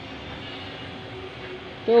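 Faint steady engine-like hum over background noise, with a woman's voice starting right at the end.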